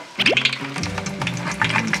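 Sliced bananas deep-frying in a wok of hot oil, sizzling and crackling as a metal spatula stirs them; it starts a moment in. Background music plays underneath.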